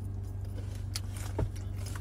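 Steady low hum of a car's idling engine heard inside the cabin, with a few light clicks and one sharp thump about one and a half seconds in.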